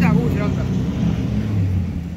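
A rally truck's engine heard moving away after passing, a steady low drone that drops in pitch. A voice speaks briefly at the start.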